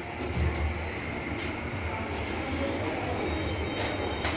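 Midea wall-mounted electric fan running steadily: a low hum and whirr of the motor and blades, with a few brief faint clicks, one near the end.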